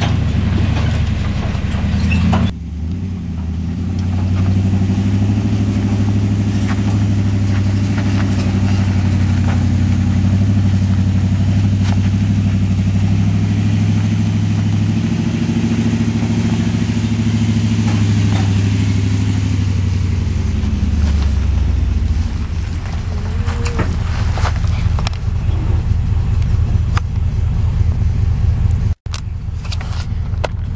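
A pickup truck's engine runs at low speed under load as it tows a loaded car trailer along a rough dirt road and passes close by. Gravel crunches and rattles under the tyres. The engine note changes and fades in the last third as the truck goes by.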